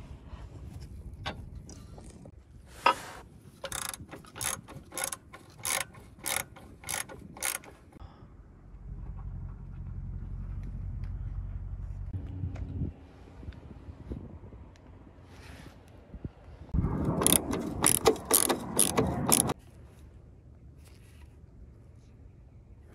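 Ratchet wrench clicking on the front suspension bolts: a string of separate clicks about two a second, then after a pause a louder, faster run of clicking.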